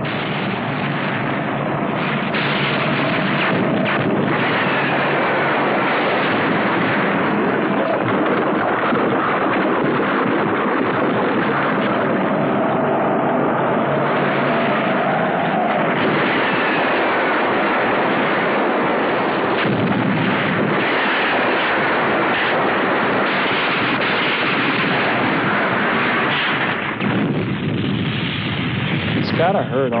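Film battle sound effects: a dense, continuous din of cannon fire and explosions, heard through a muffled, worn-tape soundtrack.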